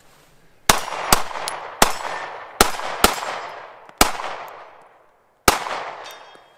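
A Bul Armory Axe 9mm Glock-pattern pistol fired seven times at an uneven pace, each shot followed by a long echoing tail.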